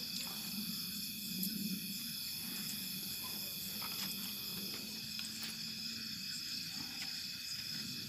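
Crickets chirping steadily: a faint, continuous high-pitched trill, with a faint low murmur beneath it.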